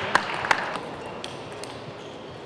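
A table tennis ball making sharp clicks: two louder ones in the first half-second, then a few fainter ones, over a hall background that drops away about a second in.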